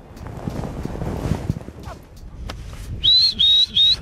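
A person whistling three short, loud blasts about three seconds in, each rising slightly at the end. Before the whistles there is low rustling noise.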